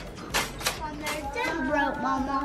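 Two short clicks, then a young boy's voice in a drawn-out, wavering vocal sound with no clear words.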